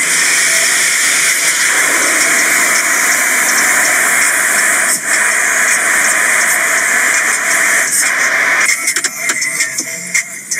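Automatic car wash spraying water over the car, heard from inside the cabin as a loud steady hiss that starts suddenly and cuts out near the end.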